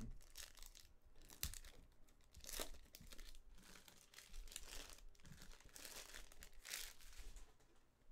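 A silver foil Panini Select baseball card pack wrapper being torn open and crinkled by hand, with the cards inside then slid out and handled. The rustling is faint and irregular, with a sharp click about one and a half seconds in.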